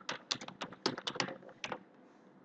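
Computer keyboard being typed on: a quick run of about a dozen keystrokes that stops shortly before the end.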